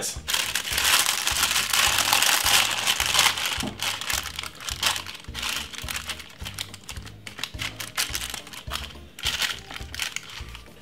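Clear plastic glove and baking paper crinkling as a gloved hand spreads chopped vegetables and marinade over lamb in a paper-lined oven tray, busiest in the first few seconds, then lighter. Background music with a steady low beat runs underneath.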